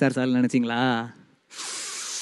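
A man's voice through a stage microphone for about the first second. Then, after a brief pause, a steady hiss starts about one and a half seconds in.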